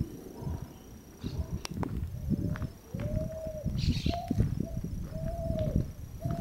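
A dove cooing: a series of about five soft coos, each a single clear note about half a second long, beginning a little over two seconds in.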